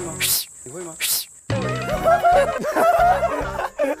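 Two short breathy puffs of air with no whistle tone, a failed attempt to whistle. From about a second and a half in, several young men laugh loudly over background music.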